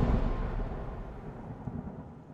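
Outro music ending in a low rumbling whoosh that fades away steadily.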